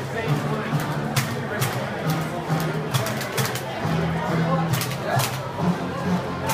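Music playing over a ballpark's public-address speakers, with crowd chatter in the stands around it.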